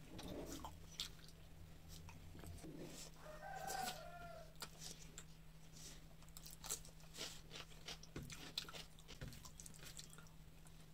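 Close-up eating sounds: fingers mixing rice and curry on a steel plate, with chewing and small mouth clicks throughout. About three seconds in, a chicken calls briefly in the background for about a second, over a faint steady low hum.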